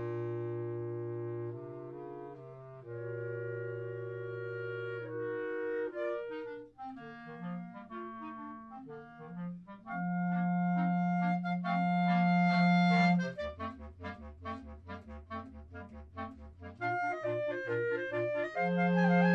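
Clarinet quartet playing in harmony. Held chords open the passage, then the parts move, a loud low note is held under a chord, and a run of short detached notes comes near the end.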